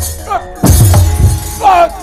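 Gamelan accompaniment to a wayang kulit fight scene: kendang drum strokes and struck metal kecrek plates, quieter for the first half second and then loud and dense. A falling vocal cry sounds near the end.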